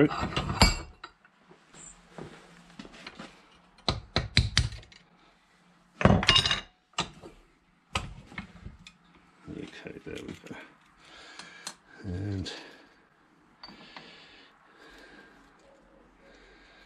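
Hammer striking a pin punch to drive the pivot pin out of a Suzuki SV1000 gear-shift toe peg clamped in a steel bench vice. The sharp metal taps come in short clusters around four and six seconds in, followed by lighter metallic clinks as the parts are handled.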